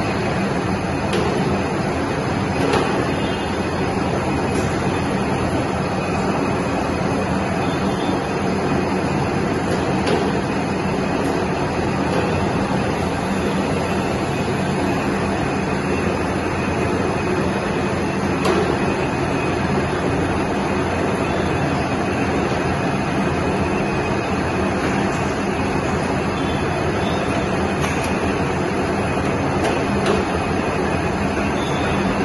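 Large Kirloskar centre lathe running, its motor and headstock gearing giving a steady, unchanging mechanical hum, with a few faint clicks.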